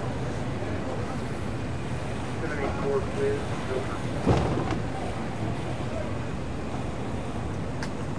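Steady low engine idle, with people's voices in the background and a single sharp knock about four seconds in.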